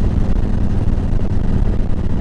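2018 Harley-Davidson Ultra Classic's Milwaukee-Eight V-twin engine running at a steady cruise, a low, even drone.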